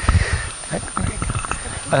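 Microphone handling noise: low thumps and rumbling, loudest in the first half-second, then scattered soft knocks and rustling.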